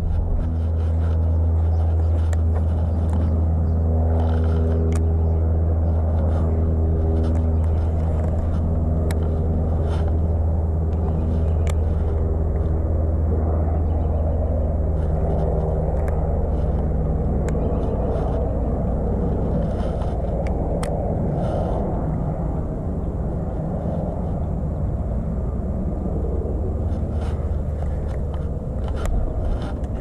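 A steady low engine hum with even overtones, which fades in the second half, with a few small scattered clicks.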